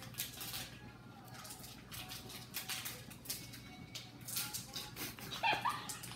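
A fork tapping and scraping faintly on a plate, with a short, stifled high-pitched laugh near the end.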